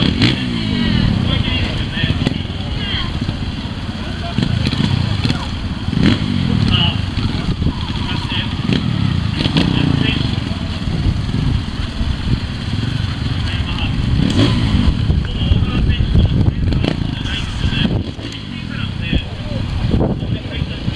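Trials motorcycle engine running at a low idle, blipped up in short throttle rises several times and dropping back each time, over the chatter of a crowd.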